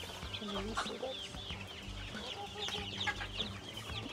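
A brood of day-old Dominant CZ pullet chicks peeping: many short, high, arched peeps overlapping one another, over a low steady hum.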